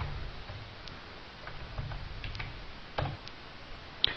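A few faint, scattered computer mouse clicks over a low steady hiss.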